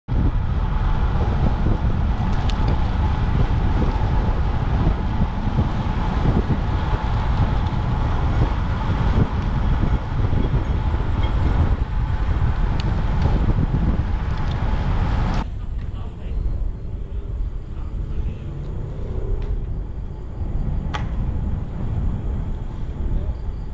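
Wind buffeting and road rumble on a bike-mounted camera microphone while riding a road bike at speed, heavy and low; about fifteen seconds in it drops suddenly to a quieter rushing noise.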